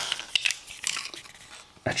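Light clicks and taps of small white plastic alarm door-contact and magnet housings being handled in the fingers, a few in the first second and fading out.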